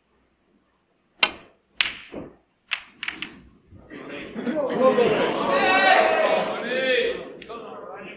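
Snooker balls clicking on the break-off: the cue striking the cue ball, then several sharp ball and cushion contacts over about two seconds. A swell of crowd murmuring in the hall follows for about three seconds, then fades.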